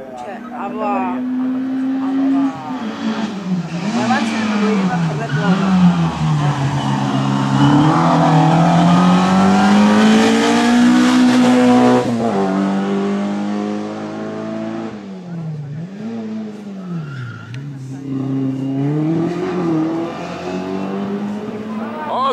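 Small racing hatchback's engine revving hard, its pitch climbing and dropping again and again as the driver accelerates and lifts between chicanes. It is loudest as the car passes close, about twelve seconds in, then drops away.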